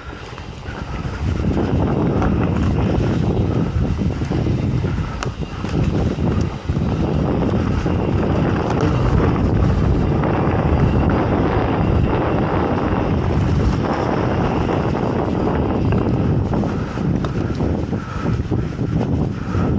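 Mountain bike riding along a leaf-covered dirt trail: wind buffeting the microphone with the rumble of tyres on the ground, getting louder about a second in as the bike picks up speed, with scattered clicks and knocks from the bike over bumps.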